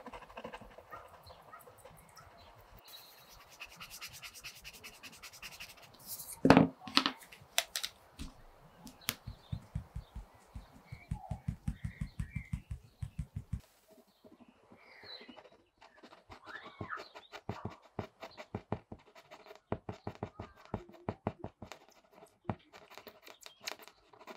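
Rotring Tikky mechanical pencil's graphite lead scratching on Bristol board in runs of rapid short shading strokes. There is one louder tap about six and a half seconds in.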